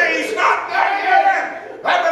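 A man preaching in a loud shouted voice, his words drawn out into a chanting cadence, with a brief drop about one and a half seconds in before the next shout starts.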